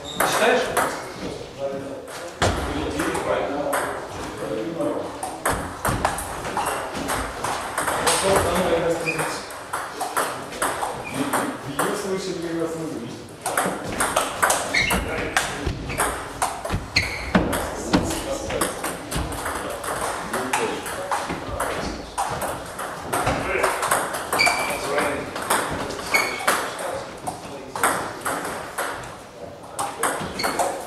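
Table tennis rallies: the celluloid ball clicking off rubber paddles and the tabletop in quick, irregular runs, with knocks from neighbouring tables mixed in. Voices talk in the hall, most plainly from about 8 to 13 seconds in.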